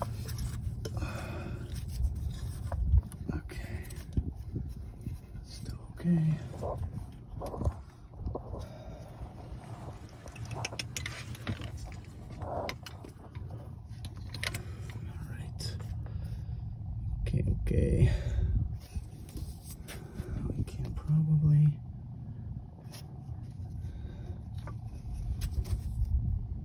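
Scattered metal knocks, clunks and scrapes as a heavy automatic transmission, resting on a trolley jack, is shifted and lined up against the engine. The loudest cluster of thuds comes a little past the middle.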